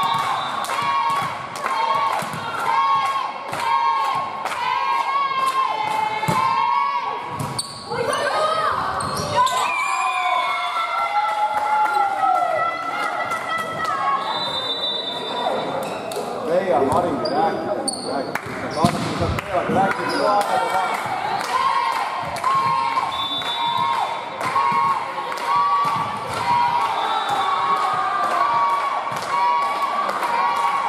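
Supporters chanting in a large sports hall over a steady rhythmic beat of about three strikes a second. The chant breaks off about seven seconds in and picks up again about twenty seconds in.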